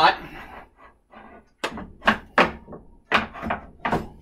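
A few knocks and thunks as a shop-made board table is dropped onto an oscillating spindle sander and its runner seated in the miter slot, with a sharp knock near the end.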